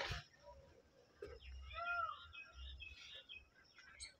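Faint bird calls: a scatter of short high chirps and one brief arching call about two seconds in, over a low rumble of wind or handling on the microphone, with a single knock at the very start.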